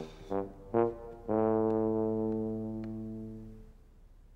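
Brass music cue from the cartoon's score: two short notes, then one long held low note that fades away over about two seconds.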